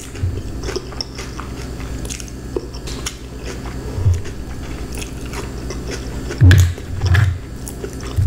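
Close-miked chewing of pizza, with many small wet mouth clicks and smacks and a few louder low thumps about four, six and a half and seven seconds in.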